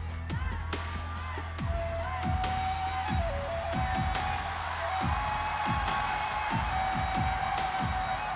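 Live rock band music in an arena: repeated drum hits under a long held keyboard melody line. The crowd cheers over the music, growing louder about two seconds in.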